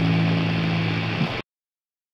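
Highland bagpipe drones of a pipe band sounding steadily, then cut off suddenly about a second and a half in, leaving silence.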